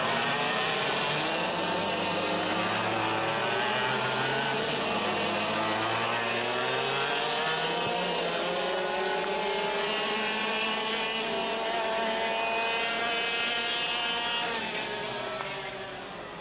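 IAME X30 125cc two-stroke racing kart engines running hard as karts lap the circuit, their pitch rising and falling as they brake and accelerate through the corners. The sound fades away near the end as the karts pass.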